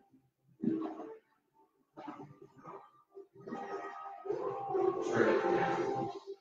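Television audio heard from another room: film soundtrack music with voices. It comes in short snatches at first, then becomes a fuller stretch of held music from a little past halfway that grows louder toward the end.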